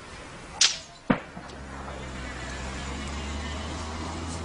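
Two sharp gunshot cracks about half a second apart, the first with a brief falling whizz, followed by a steady low engine drone that slowly grows louder.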